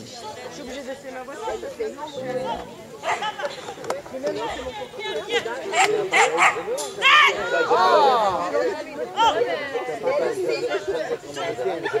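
A dog barking in a short series of sharp barks around the middle, mixed with people's voices calling and chattering.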